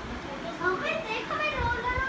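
Young children's voices chattering and calling out at a high pitch, starting about half a second in.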